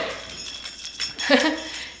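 Small bells on a handmade children's craft tambourine jingling as it is picked up and handled.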